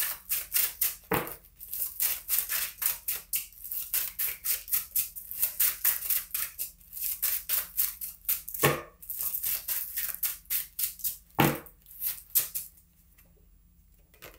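A deck of tarot cards shuffled by hand: quick papery flicks and slaps, several a second, with three louder thumps along the way. It stops about a second before the end.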